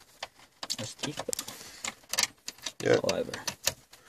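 Irregular run of small clicks and ticks from a Torx T20 screwdriver working out the screws that hold the stereo in a car dashboard's plastic trim.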